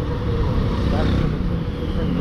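Motorcycle riding slowly in traffic: a steady engine and road noise, with heavy wind noise on the microphone.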